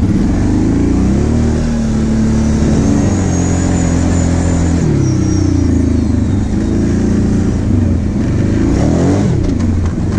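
Kawasaki Brute Force 750 quad's V-twin engine pulling under load, its pitch rising and falling with the throttle: it picks up about a second and a half in, eases off about halfway through and dips again briefly near the end.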